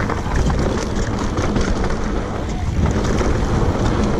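Wind buffeting the camera microphone as a mountain bike descends a rocky dirt trail, with a steady rumble from the tyres and many quick rattles and knocks as the bike bounces over rocks and loose gravel.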